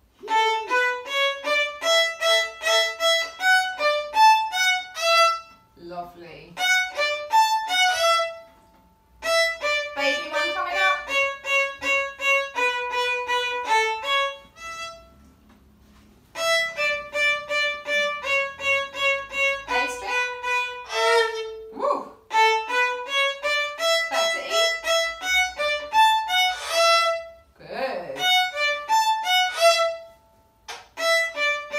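Two violins, a beginner child's and his teacher's, playing short, detached bowed notes together in quick, even rhythms, phrase after phrase with brief pauses between.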